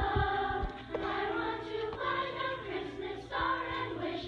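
Children's choir singing, with long held notes.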